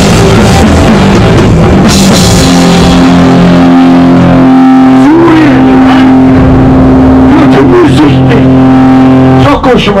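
A punk rock band playing live in a rehearsal room: distorted electric guitar, bass and drum kit, with a man's shouted vocals. From about two and a half seconds in the guitars hold a long sustained chord under the voice, and the playing breaks off just before the end.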